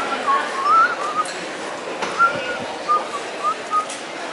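A person whistling a tune in short phrases, the single note gliding up and down with small pauses between, over the steady hum of a busy indoor mall.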